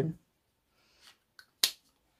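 Two faint ticks, then one short sharp click about a second and a half in, in an otherwise quiet room; the tail of a spoken word is heard at the very start.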